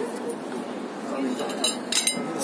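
A metal spoon clinking against a porcelain plate and dessert cup, a few sharp clinks near the end, over background chatter.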